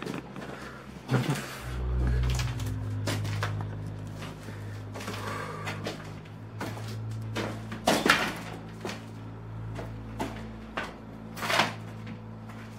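A low steady hum sets in about two seconds in. Over it come a few sharp knocks, the loudest about eight seconds in and again near the end.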